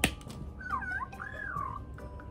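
Magic Mixies interactive plush toy making cheerful electronic chirps as it is petted above its gem, the sign that petting is building its energy: two warbling calls that rise and fall in pitch. A sharp click comes right at the start.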